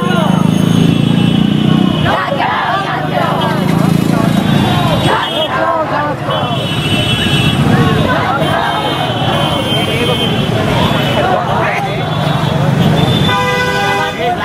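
Busy street traffic, engines running and vehicle horns honking, with a horn sounding near the end, mixed with the voices of a large group of people walking together.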